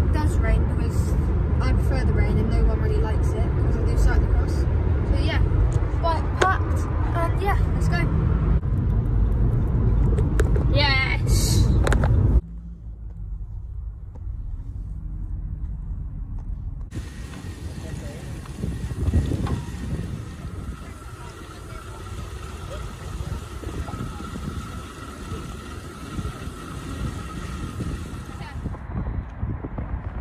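Road and wind noise inside a moving car, loud and low, with wavering sounds over it; it cuts off suddenly about twelve seconds in. After a quieter stretch, a steady whirr with a faint high whine sets in, which fits bicycles spinning on turbo rollers, and stops shortly before the end.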